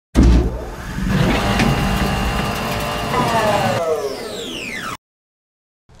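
A vehicle engine running loud and rumbling, its pitch falling away over the last second or two before the sound cuts off suddenly about five seconds in.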